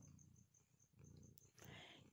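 A cat purring faintly and steadily, with a soft rustle near the end.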